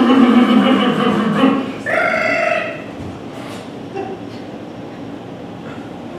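A performer's loud, drawn-out non-word vocal noise with a steady pitch for about a second and a half, then a shorter, higher vocal sound about two seconds in. After that, only quieter noise from the room.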